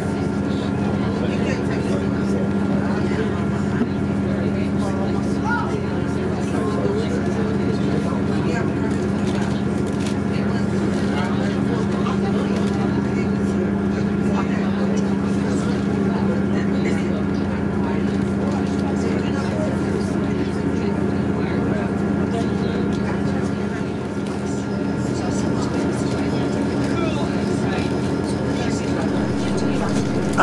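Inside the carriage of a diesel passenger train running along the line: a steady, low engine drone over rolling running noise, dipping briefly in level near the end.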